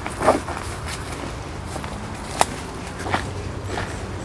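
Footsteps of a person walking through dry grass and fallen leaves, a few irregular crunching steps. There is one sharper click about halfway through.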